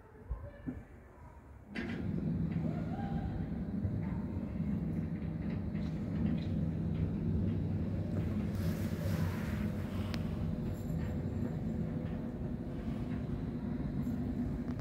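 A steady, low mechanical hum and rumble that starts abruptly about two seconds in and holds steady.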